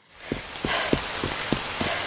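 Heavy rain sound effect, rising in quickly, with about six soft low thuds a third of a second apart, like running footsteps on wet ground.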